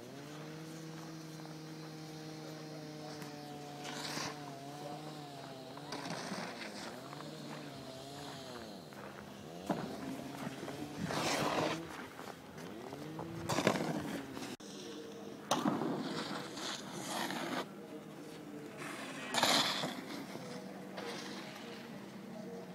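Snowboard edges scraping across the hard halfpipe walls in a series of loud, noisy bursts in the second half. Before that, a long drawn-out voice holds one pitch, then wavers.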